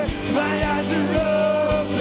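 Live band playing a rock-style worship song: a drum kit with a steady kick about twice a second under electric guitar and keyboard, with a voice singing the melody.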